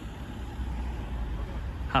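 Road traffic going by: a low, steady rumble of a passing vehicle that swells slightly.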